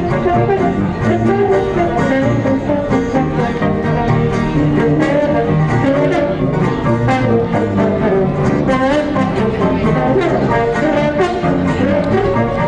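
A traditional jazz band playing a tune, with sousaphone, trombone, clarinet and banjo.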